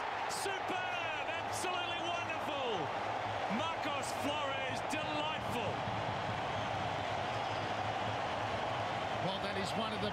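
Football stadium crowd cheering a home goal: a steady roar of many voices, with individual shouts standing out in the first few seconds.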